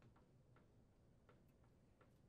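Near silence, with faint, irregular clicks, about six in two seconds, of a Phillips screwdriver turning a screw into a metal mounting flange.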